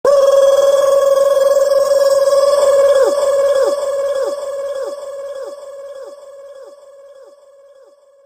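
Electronic DJ sound effect: a steady, ringing synth tone. From about three seconds in it drops in pitch again and again, about every 0.6 s. Each repeat is quieter, as in an echo-delay tail, and it fades out near the end.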